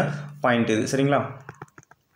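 A quick run of light clicks in the last half second, like taps or key presses.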